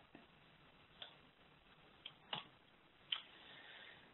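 Near silence with four short, faint clicks spread over a few seconds, followed by a faint hiss.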